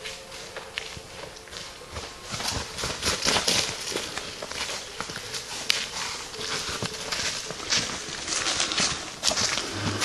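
Footsteps of people walking on a forest path littered with dry leaves and twigs: an uneven run of steps crunching underfoot.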